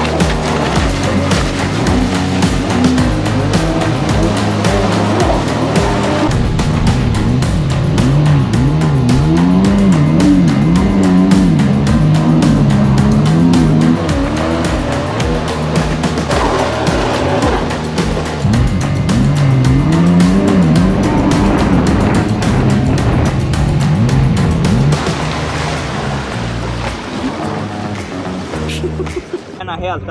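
Stand-up jet ski's engine revving, its pitch swinging quickly up and down as the craft turns, with music playing underneath. The sound eases off over the last few seconds.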